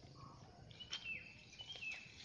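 Two short bird calls, each a held high note that then drops in pitch, about a second apart.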